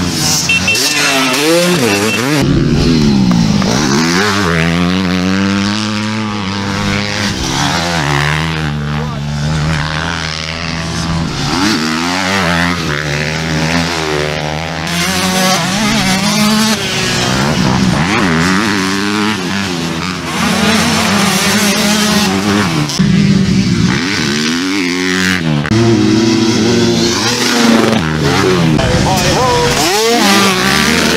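Several motocross bike engines revving up and down as they race round the track, pitches rising and falling over one another throughout, with bikes coming over the jump near the end.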